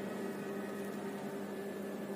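A steady background hum with a faint hiss, holding one even level with no changes.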